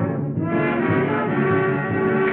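Brass-led dance band music playing, on a dated film soundtrack that lacks high treble.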